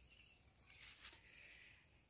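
Near silence: faint outdoor background with a few very quiet ticks about a second in.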